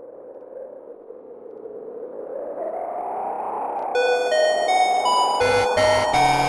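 Intro of an electro track: a hazy synth swell builds steadily louder, then about four seconds in a bright synth melody of short held notes begins, with a low bass line joining near the end.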